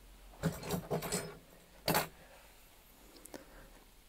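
Small tools and objects being picked up and handled on a workbench: a few short bursts of rubbing and rattling in the first second and a half, a sharper one about two seconds in, then a couple of faint ticks.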